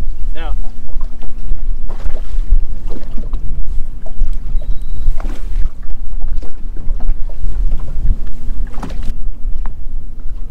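Wind buffeting the microphone with a heavy low rumble, over choppy water against a fishing boat's hull, with scattered knocks and clicks. A faint steady hum comes in near the end.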